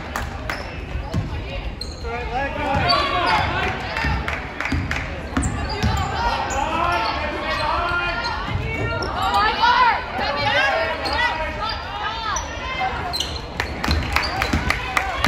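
Basketball game sounds on a hardwood gym floor: a basketball bouncing, sneakers squeaking in short rising and falling chirps, and players and spectators calling out, with the busiest stretches a few seconds in and again near ten seconds.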